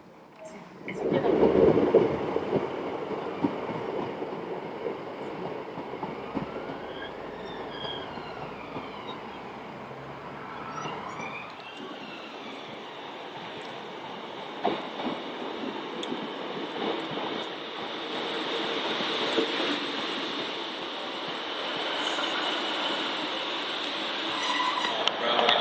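Railway station sound with a train arriving and running at the platform. A loud burst of noise comes about a second in, then a steady rumble with rising and falling whines from about six to eleven seconds, growing louder toward the end as the train draws alongside.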